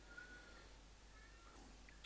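Near silence: faint room tone, with two or three faint, thin high tones.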